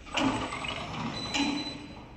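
Two sudden clattering knocks from the metal parts of a napkin paper making machine as they are handled, about a second apart, with a brief high tone in between.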